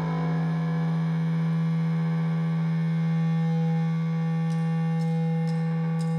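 A steady, held drone of an amplified electric guitar run through distortion and effects, one unchanging chord ringing on with a strong low note beneath, with a few faint ticks near the end.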